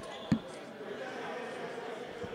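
A basketball bounces once on the hardwood gym floor, a single sharp thud with a short ring in the hall, over a low murmur of voices.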